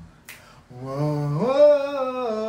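A man singing unaccompanied, with one finger snap about a third of a second in. He then holds a new note that steps up in pitch partway through.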